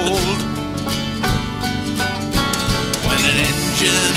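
Instrumental break of a country song: guitar playing chords over a drum beat, just after the last sung note trails off at the very start.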